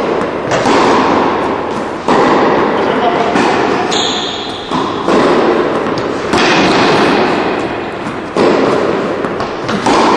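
Tennis rally: racket strikes on the ball about every one and a half seconds, each followed by a long echoing decay in a large indoor hall.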